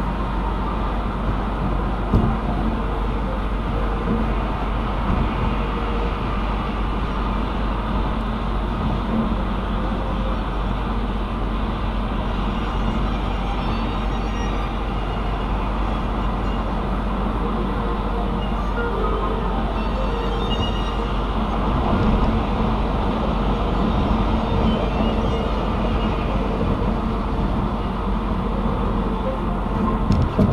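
Steady road and tyre noise of a car cruising at highway speed, heard inside the cabin, with a deep low rumble throughout. A single sharp bump about two seconds in, and the noise swells slightly a little past the midpoint.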